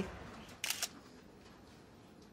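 Smartphone camera shutter sound, a short click a little over half a second in, as a selfie is taken.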